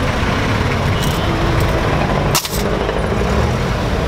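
Jeepney engine and road rumble heard from inside the crowded passenger cabin, steady and loud, with one sharp knock about two and a half seconds in.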